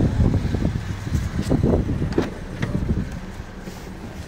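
Ford Ka+ 1.2 idling, heard under rumbling wind and handling noise on the microphone, with a few light knocks. The rumble eases about halfway through, leaving a steadier low idle hum.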